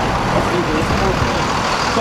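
Road traffic passing close by: a pickup truck driving past, its tyre and engine noise swelling about halfway through.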